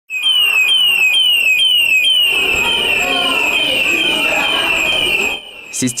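Electronic fire alarm siren at a school, set off by artificial smoke from a smoke machine: a loud, high falling whoop repeated about twice a second. Voices of a crowd of children join it about two seconds in, and the siren cuts off shortly before the end.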